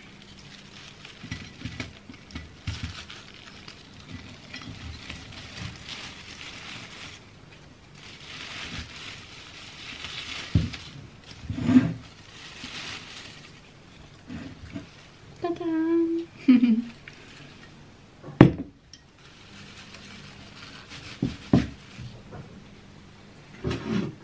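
Rustling of rose stems and leaves as a bunch of roses is set into a glass vase, with a few sharp knocks and clinks against the vase and counter, the loudest about three-quarters of the way through.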